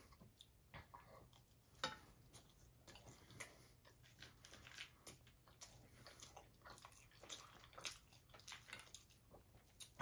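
Faint chewing of a mouthful of loaded nacho fries, with scattered soft crunches and clicks as the fork picks through the food on the plate.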